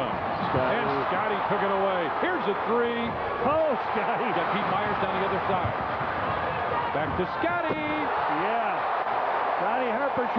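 Basketball game broadcast sound: steady arena crowd noise with voices over it and a ball bouncing on the court.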